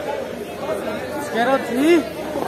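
Chatter of several voices, with one voice speaking louder near the end.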